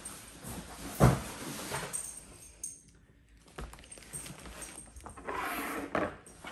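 Leather handbags handled on a countertop: a sharp thump about a second in, then quieter handling and, near the end, a rustle of the plastic wrap on a bag's handles.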